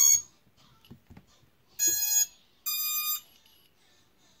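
FPV racing quad's brushless motors beeping as its ESCs start up on the LiPo battery being plugged in: a quick run of tones at the very start, then a lower beep about two seconds in and a higher beep just under a second later.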